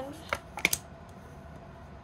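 A tarot card being drawn from the deck and laid face up on a wooden table: a few short, sharp clicks within the first second.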